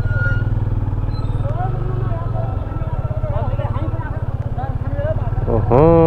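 Motorcycle engine idling with a steady low pulse. Faint voices murmur over it, and a loud nearby voice breaks in just before the end.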